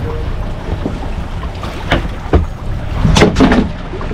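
Wind rumbling on the microphone over the sound of water around a drifting boat, with a few sharp knocks about halfway through and a louder bout of knocking and scuffling near the end.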